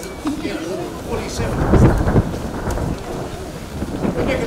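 Wind buffeting the microphone: a low rumble that swells to its loudest about two seconds in, with fragments of a man's voice around it.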